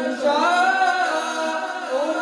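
A boy's voice singing a naat unaccompanied into a hand-held microphone: one long melodic phrase that rises in pitch about half a second in and falls back near the end.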